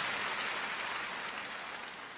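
Large audience applauding in an amphitheatre, a dense even clatter that fades out gradually.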